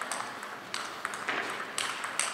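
Table tennis ball struck back and forth in a rally: sharp clicks of the ball off the bats and the table, about two a second.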